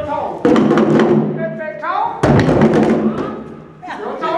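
A group of djembe drums struck together in two loud hits about two seconds apart, each ringing on briefly. A voice calls out shortly before the second hit.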